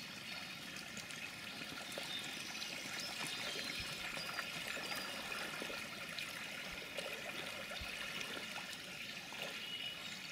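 Shallow river running over stones: a steady trickle and babble of moving water, with a few faint small clicks scattered through it.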